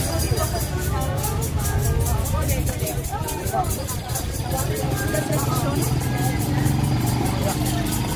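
Busy outdoor street ambience: a steady low engine rumble under the chatter of many voices, with music playing in the background.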